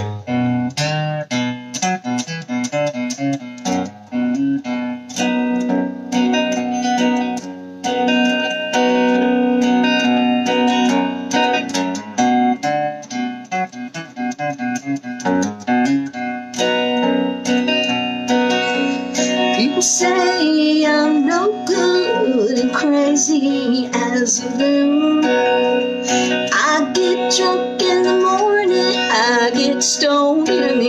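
Electric guitar playing a country-rock song intro, picked notes and chords.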